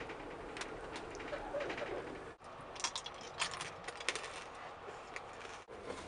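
Tissue paper crinkling in a quick cluster of small crackles as a wrapped sweet is handled, over a faint, steady rumble of a moving train carriage.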